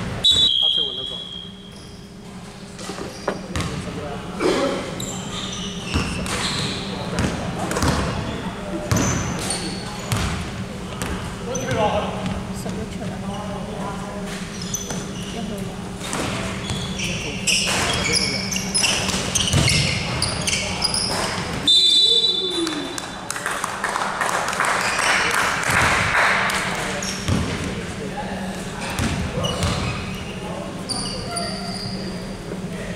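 Basketball bouncing and knocking on a hardwood gym floor during a game, with a referee's whistle blown briefly at the start and again about two-thirds of the way through, over a steady hall hum.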